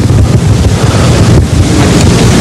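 Loud, steady rough rumble and hiss on the microphone, heaviest in the low end, with no speech.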